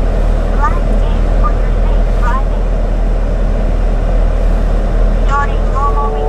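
Chevrolet Camaro V8 idling steadily, a deep, even rumble heard from inside the cabin.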